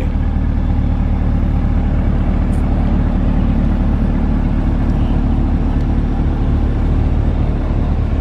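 A steady, loud low machine hum with a constant pitch that does not change.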